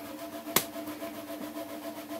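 A single light knock about half a second in as a cardboard filament spool is set down on a table, over a steady hum.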